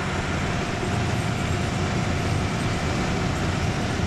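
Case IH tractor engine running steadily at constant speed, a low even rumble with a faint steady whine above it.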